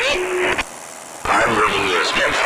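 Aircraft VHF radio check: a voice over the radio asking 'how do you read?', a short hissy pause just under a second long, then another voice answering with the readability report.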